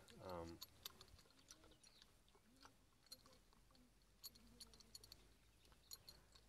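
Faint, scattered clicks of a horse chewing on a metal bit that has just been put in her mouth for the first time.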